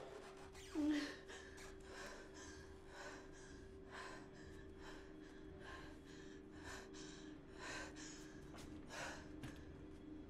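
A woman's ragged, gasping breaths, repeated every half-second to second, with a louder catching gasp about a second in.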